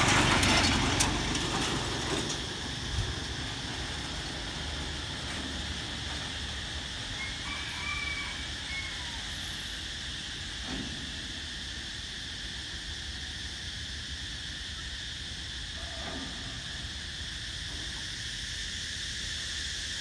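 A small motorcycle passes close by, its engine sound fading away over the first two or three seconds. After that a steady high-pitched insect drone carries on over faint outdoor background noise.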